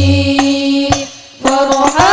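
Women's voices singing Islamic devotional song (sholawat), holding one long note over rebana frame drums with a deep drum beat at the start. The note fades about a second in, and after a brief lull the singing and drumming resume near the end.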